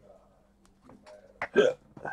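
A man's single short, sharp vocal sound, a hiccup-like catch of the voice about one and a half seconds in, just after a click.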